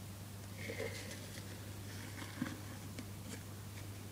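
Faint clicks, scrapes and a brief squeak of a clear plastic food container being handled with a gecko inside, over a steady low electrical hum.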